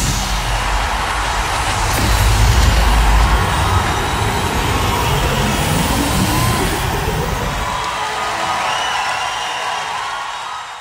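Outro of an electronic pop track: the vocals stop and a dense noisy wash with heavy bass carries on, the bass dropping out about three and a half seconds in. The remaining noise then slowly fades.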